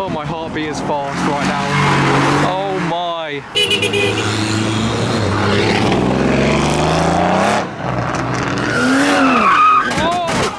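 Modified cars accelerating away, their engines revving up and down in several separate runs, with a crowd of onlookers shouting over them.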